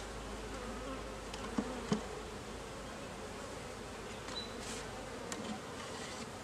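Steady buzzing of many honeybees flying over an open, disturbed hive, with a couple of soft knocks about a second and a half and two seconds in.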